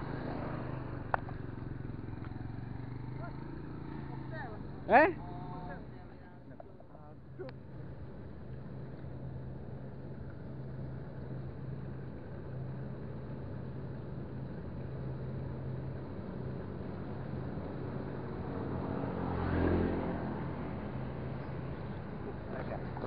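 Steady low engine hum of nearby motor traffic, with one vehicle passing and swelling louder, then fading, near the end.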